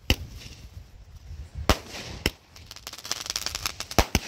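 Aerial fireworks bursting: a sharp bang just after the start, two more about a second and a half later, then a fast run of crackling near the end.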